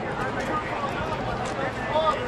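Ballpark crowd ambience: spectators chatting in the stands as a steady murmur of many distant voices.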